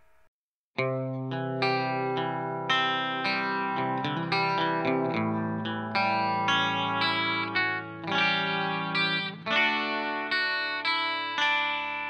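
Instrumental intro of a song: after a short silence, plucked notes with an effects-processed, chorus-like tone start about a second in. They repeat every half second or so over held low notes and thin out near the end.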